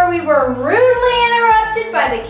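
A child's voice singing a drawn-out phrase, its pitch dipping then rising about half a second in and then holding.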